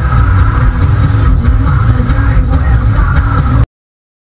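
Car cabin noise at motorway speed, a steady low engine and road drone picked up by the dash cam. It starts abruptly and cuts off suddenly near the end.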